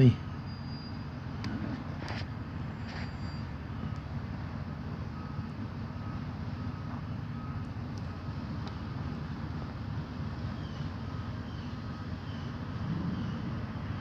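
Steady low rumble of an idling vehicle engine, with faint short high beeps in the middle and near the end.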